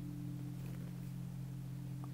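A quiet, steady low hum of a few held tones with nothing else on top: background room or equipment hum.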